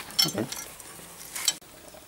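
Faint rustling and scraping of hands working on a Land Rover's front brake caliper and hub, with one sharp metallic click about a second and a half in.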